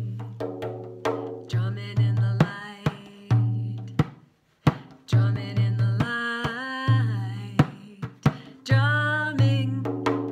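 Hand-played Remo frame drum in a steady pattern of deep, ringing open strokes and sharp rim snaps, with a brief pause about four seconds in. A woman's voice chants along with the drum in the second half.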